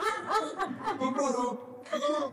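Men chuckling and laughing, with bits of talk in between.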